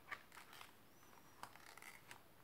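Near silence with a few faint ticks and soft rustles as a picture-book page is turned.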